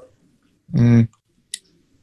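A man's short, steady-pitched hesitation sound ('uh') in a pause mid-sentence, followed about half a second later by a brief click, over faint room tone.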